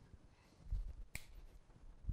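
Faint low thuds of footsteps as a man walks across the floor, with a single sharp click a little over a second in.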